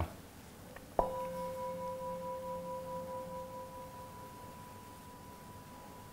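A brass singing bowl struck once with a mallet about a second in, then ringing on in a steady, slowly fading tone; its lower note dies away after a few seconds while the higher one keeps sounding. The strike marks the start of a one-minute meditation period.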